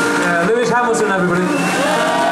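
A live rock band's electric guitars holding a sustained, distorted closing chord, while audience members whoop and shout over it.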